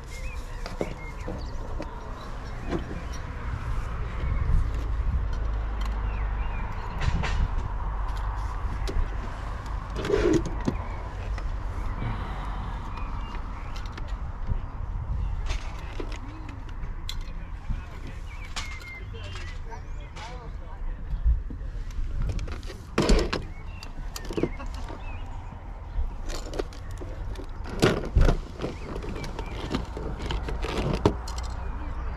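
Plastic toy figures clicking and knocking against each other and the table as they are picked up and handled, with a few sharper knocks. Under them are a low rumble and faint background voices.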